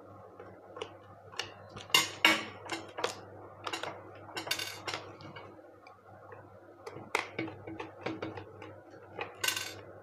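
Small Phillips screwdriver backing screws out of a plastic mosquito-racket handle: irregular ticks and clicks of the driver tip turning in the screw heads, broken by a few short rasping scrapes of metal on plastic.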